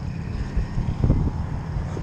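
Wind rumbling on an outdoor camera microphone, with a stronger gust about a second in.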